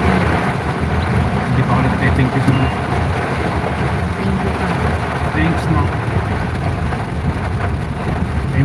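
Steady rumble and hiss heard from inside a stopped vehicle, its engine running while rain falls outside.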